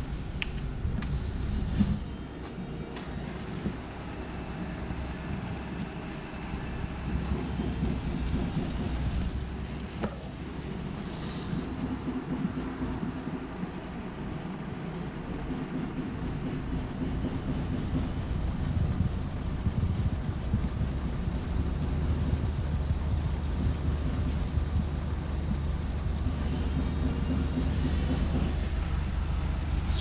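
Xante Ilumina digital envelope press running a colour print job: a steady mechanical hum and whir that grows louder in the second half, with a few sharp clicks.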